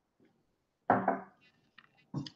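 A man's short, throaty exhale about a second in, right after swallowing a sip of cask-strength whiskey, followed by a faint click.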